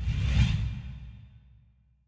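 A whoosh sound effect over a deep rumble. It starts suddenly, swells for about half a second, then fades away over the next second, as a logo transition at the end of a programme.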